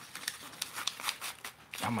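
Rustling of a cloth fishing-rod sleeve being grabbed and handled, a run of short scratchy rustles.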